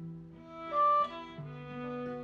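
Fiddle, cello and acoustic guitar playing a Celtic-style fiddle tune together. Long low cello notes sit under the fiddle melody, and a loud high fiddle note stands out about a second in.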